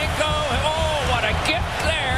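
A television commentator's voice with music under it.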